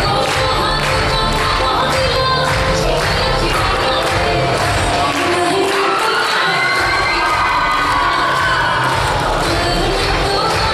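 A song with singing and a steady beat plays loud for a dance. An audience cheers and shouts over it. The bass drops out briefly in the middle while a singer holds a long note.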